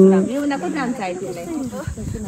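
Women's voices: a loud voice trails off just after the start, followed by quieter talk with rising and falling pitch. A faint steady high-pitched whine runs underneath.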